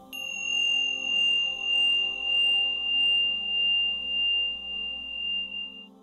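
A single high, clear ringing tone that starts suddenly and holds steady with a slow, even pulsing in loudness for nearly six seconds, then stops short. Soft ambient music plays underneath.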